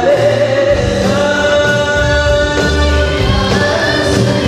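A child singing a gambus-style qasidah into a microphone, holding one long note through the first half, backed by a live amplified band with keyboard, electric guitars, bass, drum kit and hand percussion.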